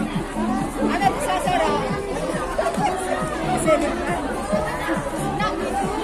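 Several women chattering over one another, with background music.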